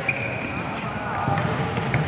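Volleyball being hit in an indoor sports hall: a sharp smack of the ball right at the start and another knock near the end, with players' voices calling.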